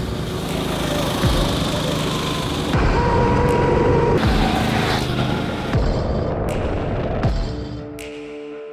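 Loud electronic background music with heavy bass hits about every second and a half.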